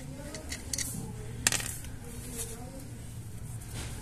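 A few light metallic clicks and taps from handling a loosened Chevrolet Aveo front brake caliper, with one sharper click about one and a half seconds in, over a faint steady hum.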